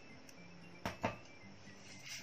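Wire whisk stirring coconut-milk jelly mixture in a stainless steel pot, faint, with two light knocks of the whisk against the pot about a second in.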